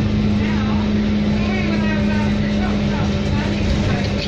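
Alexander Dennis Enviro 400 double-decker bus on the move, heard inside the passenger cabin: a steady, even-pitched drone from the running driveline over a low road rumble, with faint passenger chatter.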